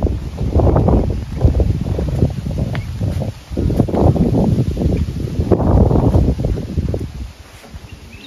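Wind buffeting the microphone in uneven gusts, a heavy rumble that rises and falls and eases near the end.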